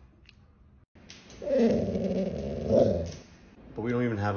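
A golden retriever vocalising in a long, rough, rising-and-falling grumble, the dog 'talking back' to her owner. It starts about a second and a half in and lasts nearly two seconds.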